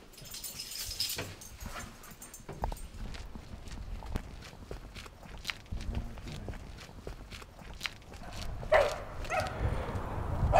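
Footsteps on a tarmac path, then a dog barking a few times near the end.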